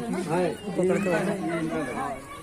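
Speech only: people talking in Hindi, voices close to the microphone.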